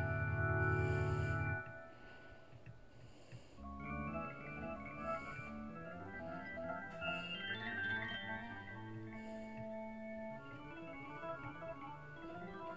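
GarageBand's Grand Organ software instrument, with heavy reverb, playing a toccata from a MIDI file. A loud held chord stops about one and a half seconds in, and after a quieter gap a run of fast, busy notes follows.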